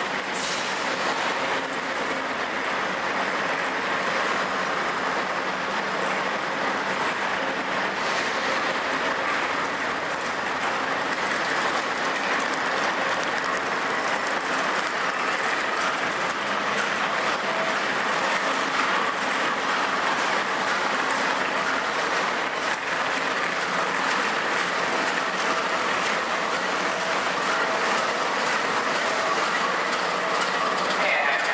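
Steady din of diesel locomotives and passenger trains standing under a covered station trainshed, with faint steady hums running through it.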